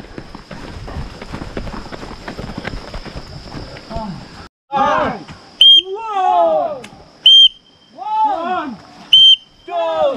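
Running footsteps of a group on a concrete road. After a cut, a trainer's whistle blows four short, sharp blasts about a second and a half apart, each followed by loud shouts from the group, keeping time for an exercise drill.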